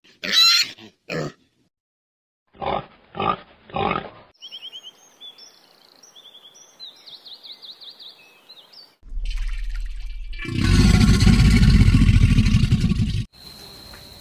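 Warthogs calling: a loud high squeal and a shorter call, then three short grunts. High chirping trills follow, and near the end there are a few seconds of loud, noisy rumbling.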